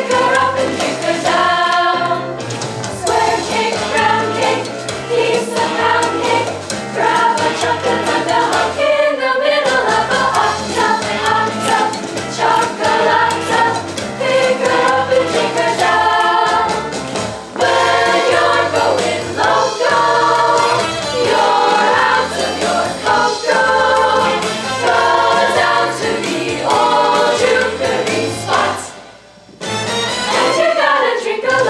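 Girls' choir singing an upbeat jazz song in close harmony, with finger snaps keeping the beat and a low line stepping underneath. The singing breaks off briefly near the end.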